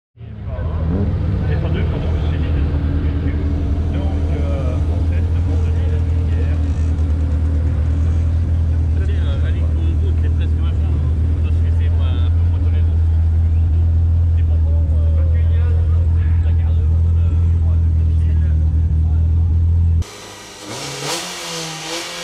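Renault Clio 2 Cup's four-cylinder engine idling close up, a loud, steady, deep drone. About twenty seconds in the sound cuts to the car under way on the hill, quieter, with the engine note rising and falling as it revs.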